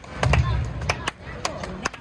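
A crowd of spectators clapping on cue, the claps scattered and out of time with one another rather than landing together. Voices sound underneath.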